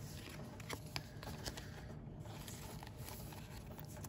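Faint rustling and a few light ticks of a trading card being slid into a card sleeve.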